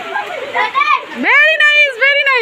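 Excited children's voices chattering and shouting, then about a second in one child gives a long high-pitched shout that rises and falls.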